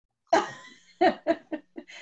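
A woman laughing in a string of short bursts, starting after a brief dropout of the call audio.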